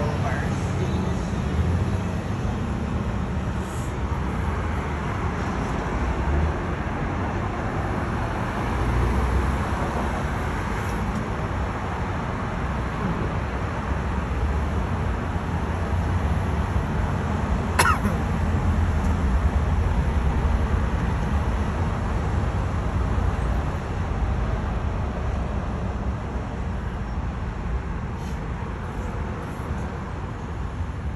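City street traffic heard from above: passing cars make a steady low rumble and tyre noise that swells and fades as they go by. A brief sharp squeak cuts through about eighteen seconds in.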